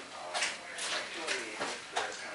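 Footsteps on a hard shop floor, a few short steps about two or three a second, walking away.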